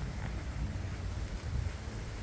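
Outdoor wind rumbling on a handheld phone's microphone: a steady, low, uneven rumble with no distinct events.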